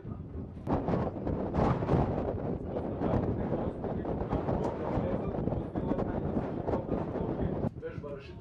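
Audience applause, a dense spread of clapping that cuts off suddenly near the end.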